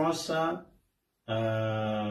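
A man speaking a few words, then after a short pause one long steady note on a single low pitch, held for about a second.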